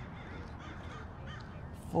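Faint crow caws over a steady low outdoor background hush.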